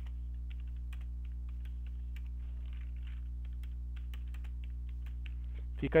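Computer keyboard typing: quick, irregular keystroke clicks throughout, over a steady low electrical hum.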